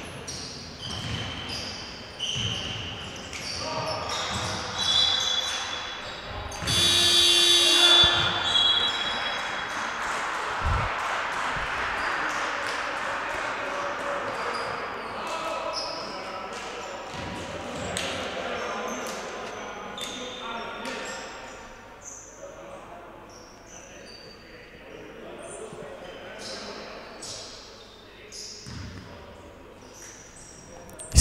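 Basketball game sounds in a large, echoing sports hall: a ball bouncing, sneakers squeaking on the hardwood court and players calling out. About seven seconds in comes a loud, piercing whistle blast, a referee stopping play.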